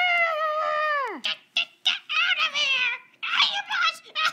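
A child's long, high-pitched cry of "Ah!", held for about a second and then dropping away in pitch, followed by a run of short, excited vocal bursts.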